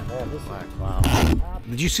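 A man's voice over background music, broken about a second in by a short, loud rush of noise.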